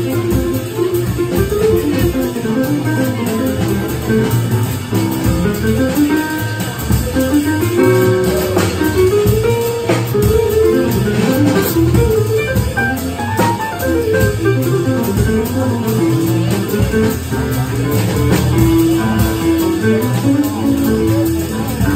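Live small-group jazz: saxophone, upright bass, drum kit and keyboard playing together, with a melody line that moves up and down over a steady bass and drums.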